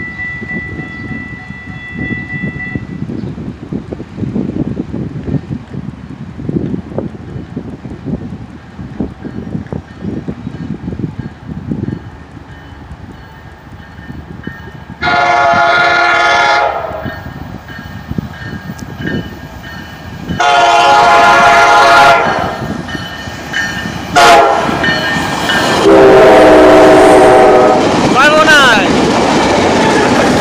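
Tri-Rail commuter train approaching and passing, its horn sounding four blasts, long, long, short, long, the standard grade-crossing signal. The last blast is lower in pitch as the cab car goes by, and the train's rumble and wheel clatter grow to a loud pass-by near the end.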